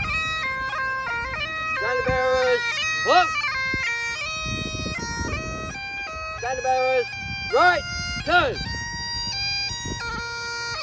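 Great Highland bagpipe playing a march tune over its steady drones. A voice calls out briefly a few times, loudest near the end.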